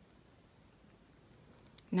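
Faint rustle of nylon beading thread being drawn through seed beads, close to silence; a woman's voice begins near the end.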